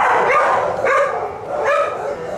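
Dogs barking in a shelter kennel block: several short barks and yips in quick succession.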